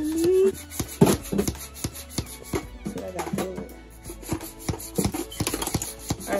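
Blue plastic hand air pump worked in quick strokes, inflating a plush ride-on unicorn toy: a run of short rasping pump strokes, several a second.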